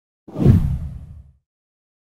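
A single whoosh transition sound effect with a deep boom beneath it. It sets in about a quarter second in, peaks at once, and fades away over about a second.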